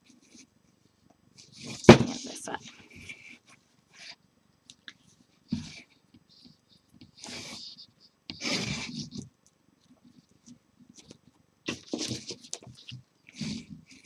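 A person's sharp breathy hisses and gasps, several short ones spread apart, typical of a hot glue burn on the fingers; a single sharp knock sounds about two seconds in.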